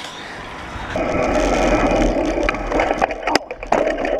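Bicycle riding noise picked up by a bike-mounted camera: a crackly rush of tyres rolling over rough pavement that grows louder about a second in, then a few sharp knocks and rattles near the end.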